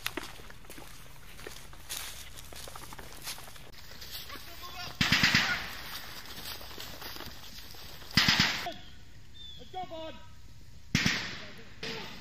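Three short bursts of rifle fire, about three seconds apart, each a quick string of several shots.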